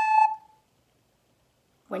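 A recorder playing the lower, second note of a two-note cuckoo call, cutting off about half a second in.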